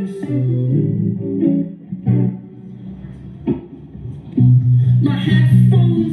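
Live busking performance of an electric guitar with a male voice singing. It dips quieter in the middle and comes back louder from about four and a half seconds in.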